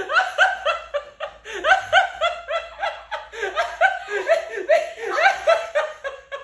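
Loud, unbroken laughter: a quick run of high-pitched ha-ha bursts, several a second.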